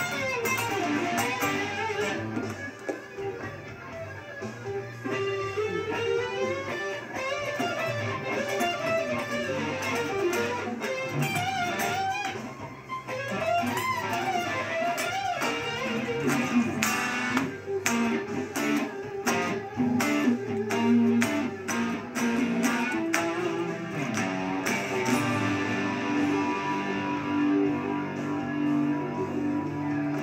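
Homemade Stratocaster-style electric guitar, amplified, playing a rock part: bent and wavering lead notes in the first half, then sharply picked notes and chords from about the middle, settling into held notes near the end.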